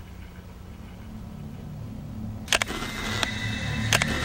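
Low drone, then a sharp camera shutter click a little past halfway, followed by more evenly spaced clicks as sustained musical tones come in.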